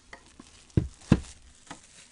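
Handling noise: a few light knocks and scraping, with two sharper knocks close together about a second in.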